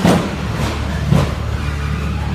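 Combat robots fighting in an arena: two sharp metal impacts, one right at the start and one about a second in, over a steady low rumble of drive motors.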